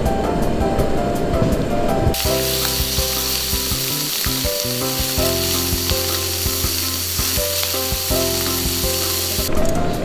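Pieces of pork searing in a hot frying pan, sizzling steadily from about two seconds in until shortly before the end.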